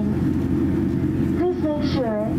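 Steady low rumble of a Boeing 787-8's cabin as the airliner taxis on the ground, engines turning at low power. A person's voice comes in near the end.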